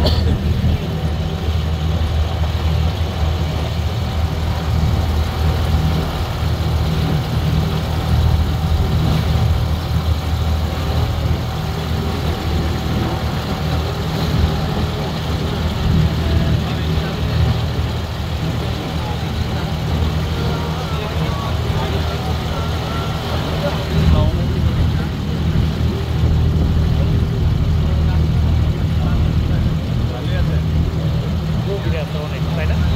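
Boat engine running steadily under way, a low even drone, with the wash of water around the hull.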